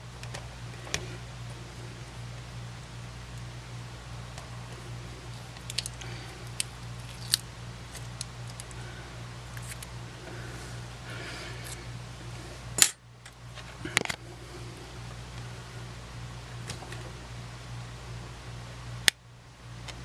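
Small clicks and taps of fingers and tools on the plastic and metal parts of a disassembled compact camera, over a steady low hum. The sharpest clicks come about two-thirds of the way in and again near the end.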